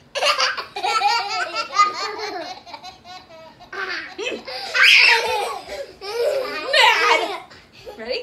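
Young children laughing in several loud bursts during a play game, more than one voice at once.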